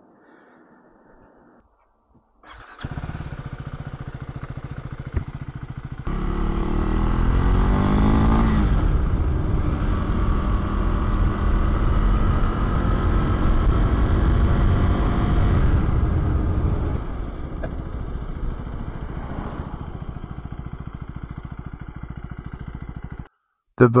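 Husqvarna Svartpilen 401's single-cylinder engine running steadily from about three seconds in. It then pulls away with rising revs, runs loud at speed, eases off to a lower steady note and cuts off near the end.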